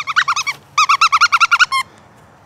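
Plush hedgehog squeaky toy squeaked rapidly, a quick run of high squeaks at about ten a second, with a short break about half a second in.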